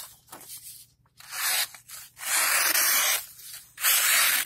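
Steel folding-knife blade (Sanrenmu 7074) slicing through a sheet of paper in three strokes, the middle one the longest, each a crisp rasping hiss. The edge is still cutting paper super, super well.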